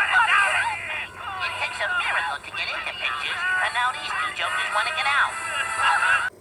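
Cartoon soundtrack heard through a TV speaker: lively music under high cartoon voices whose pitch swoops up and down rapidly, as in yelling or laughing.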